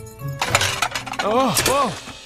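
Cartoon sound effect of something crashing and breaking: a noisy crash about half a second in, with sharp clattering strokes near the middle.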